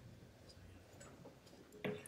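Near-quiet hall room tone with a few faint small clicks and rustles, then a brief short vocal sound close to the microphone near the end.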